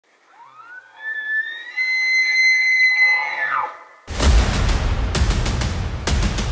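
Bull elk bugle: a whistle that rises to a high note, holds for about two seconds, then drops off. About four seconds in, loud music with a heavy beat starts.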